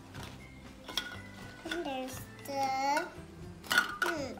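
Light clicks and clatter of small plastic toy pieces being handled, with a sharper click just before the end. A child's voice hums or vocalises briefly twice in the middle.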